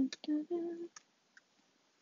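A person humming a tune in short held notes, then stopping, followed by a few sharp finger snaps spaced unevenly apart.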